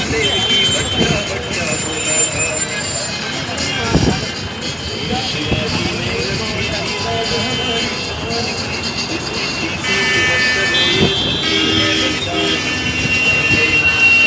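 Crowd hubbub of many voices on a busy road, with vehicle horns tooting now and then and music playing in the background.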